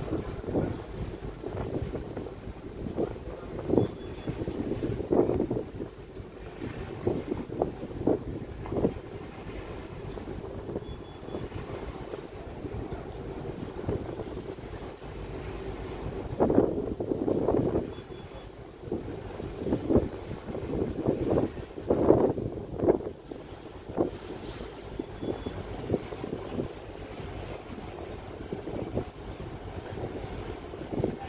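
Wind buffeting the microphone in irregular gusts over the steady low rumble of a large passenger ship underway, heard from its open deck.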